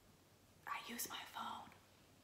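Silence, then about a second in a woman whispering or murmuring a few words under her breath, too soft to make out.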